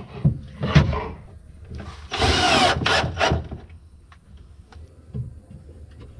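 Cordless drill running for just under a second about two seconds in, driving a hinge screw into a wooden cabinet lid, with knocks and clicks of the panels being handled around it.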